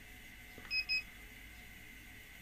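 Two short electronic beeps from a handheld infrared thermometer taking a temperature reading, about three-quarters of a second in and a quarter-second apart.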